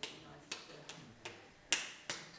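A series of five sharp clicks or taps, irregularly spaced at about two a second, the loudest one near the end.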